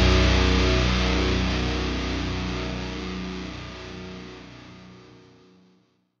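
Final chord of a hardcore song on distorted electric guitar, left ringing and fading out over about five and a half seconds into silence.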